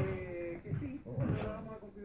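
Small dogs play-fighting, one giving a drawn-out whine that falls slightly in pitch over the first half second, then a shorter, rougher vocal sound about a second and a half in.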